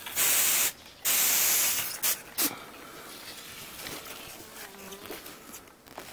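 Hand-held trigger sprayer misting: two hissing sprays, about half a second and about a second long, then two short spurts.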